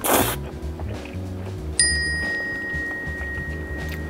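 Noodles slurped briefly at the start, then background music with a single bell-like ding about two seconds in that rings on until near the end.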